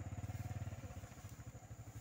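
Small motorcycle engine running at low speed with an even low pulsing, as the bike creeps along a slippery dirt path. The engine sound gets quieter about a second in.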